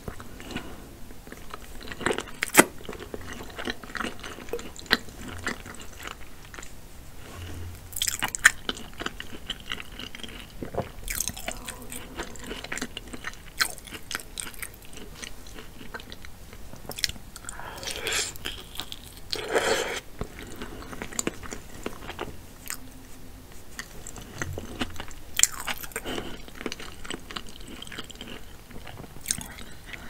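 Close-miked chewing and biting of saucy seafood boil food: wet mouth sounds with irregular clicks and a few louder bites.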